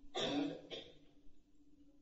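A man briefly clearing his throat: one short rasp of about half a second, with a smaller catch just after it.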